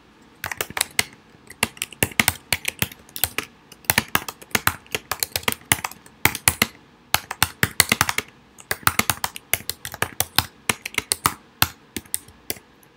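Typing on a computer keyboard: a fast, uneven run of key clicks with a few short pauses.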